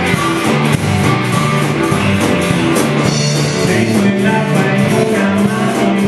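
Live rock band playing a boogie, with electric guitar, bass and drums keeping a steady beat and a harmonica playing held notes over it.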